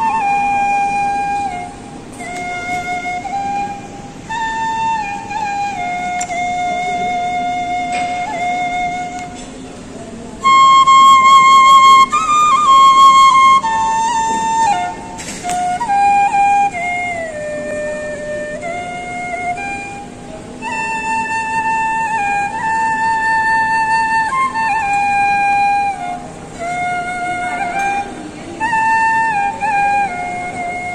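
Bansuri (side-blown bamboo flute) played solo: a slow melody of long held notes that slide into one another, with a louder, higher phrase about ten seconds in.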